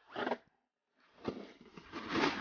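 Crunching and scraping of fresh, moderately fluffy snow close to the microphone, beginning about a second in after a short burst of noise at the start.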